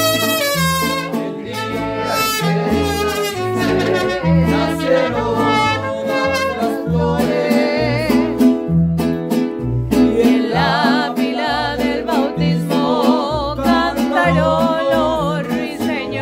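Mariachi band playing: trumpets carry a wavering melody over a bass line that moves in a steady beat.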